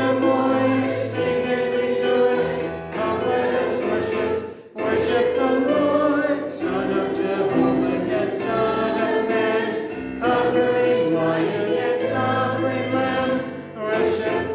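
A congregation singing a hymn together in sustained, phrase-by-phrase lines, with a brief break between phrases a little under five seconds in.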